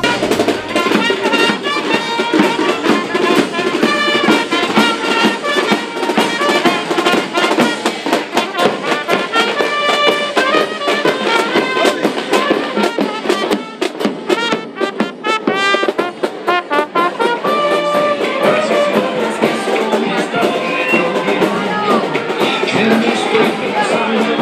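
A marching street band playing: trumpets and trombones carry a tune over snare drums and a bass drum keeping a steady beat.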